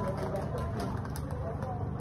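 Faint talk from people in the room over a steady low hum.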